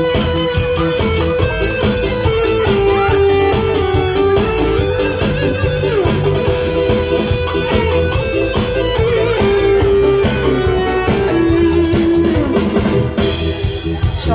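Instrumental passage from a live band: an electric guitar carries a held, sometimes bending lead melody over bass guitar and a steady drum-kit beat.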